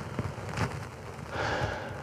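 Pause in a sermon at the pulpit microphone: faint room tone with a few soft clicks, then a short breath in about a second and a half in.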